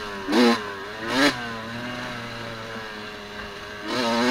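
Dirt bike engine with two quick throttle blips in the first second and a half. The engine then runs low and steady off the throttle, and the revs climb again near the end.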